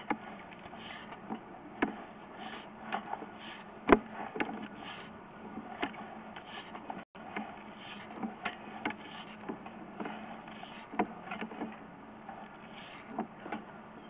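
Faint irregular clicks and knocks, loudest about two and four seconds in, over a low steady hum, as a sewer inspection camera's push cable is fed by hand into a drain line.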